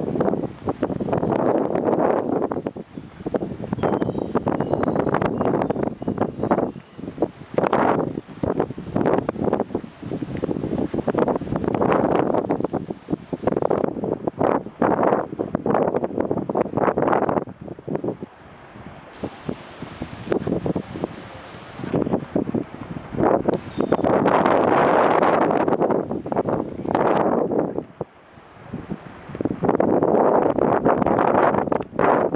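Wind buffeting the microphone in irregular gusts, with quieter lulls between.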